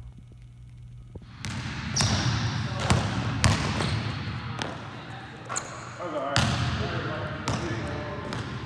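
Basketballs bouncing on a hardwood gym floor, a sharp bang about every second with the echo of a large hall. The first second and a half is quieter, with only a low hum.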